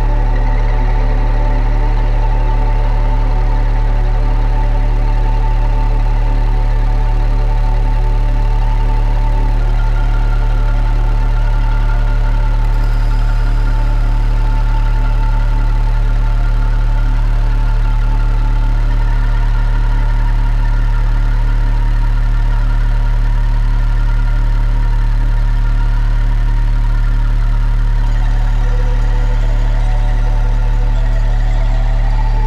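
Electronic dark-ambient music: a loud, steady low drone that throbs rapidly, under layered sustained tones, with a higher tone entering about ten seconds in.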